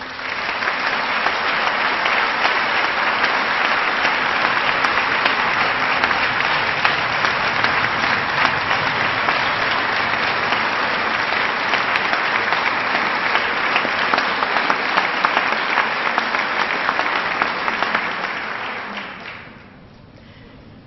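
Large crowd applauding: dense, steady clapping that starts at once and dies away about a second before the end.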